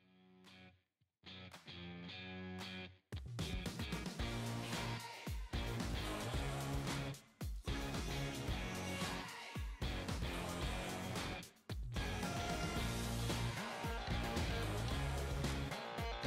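Rock music with electric guitar: a sparse guitar intro that breaks into a full band with a steady beat about three seconds in.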